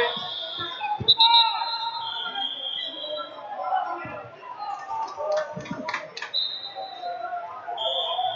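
Referee whistle blasts, several in a row from the mats of a busy wrestling gym, over shouting coaches and chattering spectators. A few sharp slaps or claps come about five to six seconds in.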